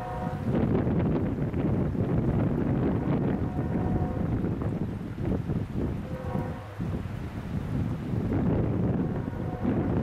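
Diesel freight locomotive working under load, a steady low rumble heard from afar, with wind buffeting the microphone.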